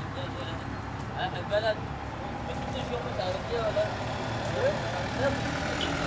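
Faint, indistinct voices talking over a steady low rumble.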